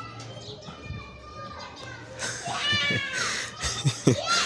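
Children's voices in the background, with one high call that rises and falls a little after two seconds in, over a faint low hum.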